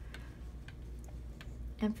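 Faint, scattered light clicks of hands working a sewing needle and yarn through crocheted fabric, over a low steady hum.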